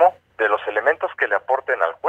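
Speech only: a man's recorded voice with a thin, radio- or phone-like sound, over a faint steady low hum.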